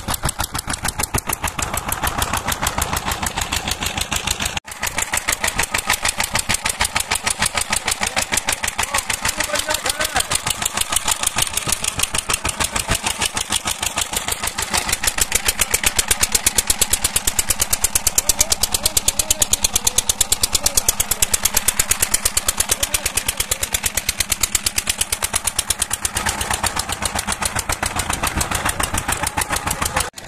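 An engine running steadily close by, a fast even beat. The sound breaks off for a moment about four and a half seconds in, then runs a little louder in the second half.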